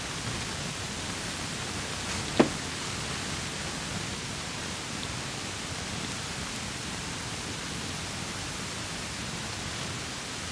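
Steady hiss of room noise in a small hall, with one sharp knock about two and a half seconds in.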